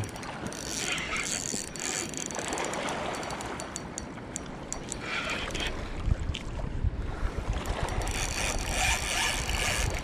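Spinning reel being cranked in three short spells under the load of a heavy hooked salmon. Wind rumbles on the microphone from about six seconds in.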